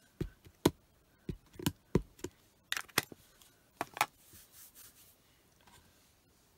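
Clear acrylic stamp block and plastic ink pad handled while the stamp is inked: about ten sharp plastic taps and clicks over the first four seconds, then a soft rustle.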